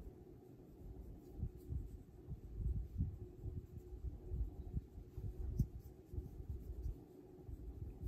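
Faint, irregular soft knocks and light rubbing from a paintbrush working wet alcohol ink across the paper on a tabletop, over a steady low hum.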